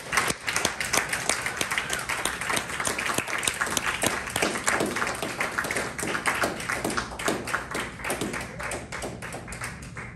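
Audience clapping: many hands in quick irregular claps that thin out and grow quieter, dying away at the end.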